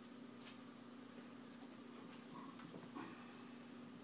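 Very faint scattered clicks and light rustling as fingers scratch a Nanday conure's head feathers, over a steady low hum, with one tiny brief peep from the bird a little past halfway.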